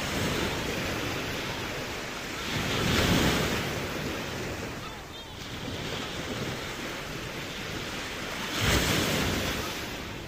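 Steady outdoor rushing of wind and surf, swelling about three seconds in and again near the end.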